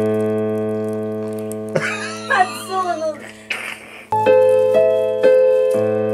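Yamaha digital keyboard played in a piano-like voice. A held chord slowly fades away, then about four seconds in the playing starts again with single melody notes over a sustained chord.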